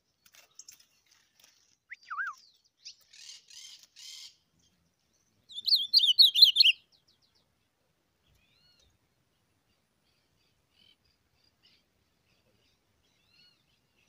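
A small songbird calling and singing: a short gliding note about two seconds in, a few buzzy notes, then a loud, rapid twittering phrase about a second long, the loudest sound here.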